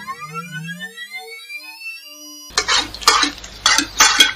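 An electronic tone sliding upward in pitch and levelling off, a loading-screen sound effect. About two and a half seconds in it cuts off abruptly and gives way to fast clattering of a spoon against a bowl as someone shovels food in.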